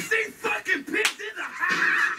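A single sharp slap about a second in, during a break in hip-hop music, with a voice over the break.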